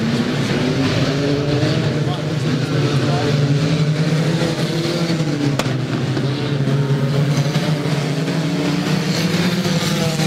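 Engines of several banger racing cars running and revving on a dirt oval, their pitches rising and falling as they race past, over a general track noise; a single sharp click about halfway through.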